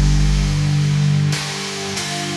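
Instrumental passage of a song, with no vocals: a held low chord with heavy deep bass that fades away in the first second or so, leaving quieter higher notes.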